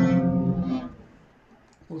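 An F#m barre chord at the second fret, strummed once on an acoustic guitar, ringing out and fading away within about a second.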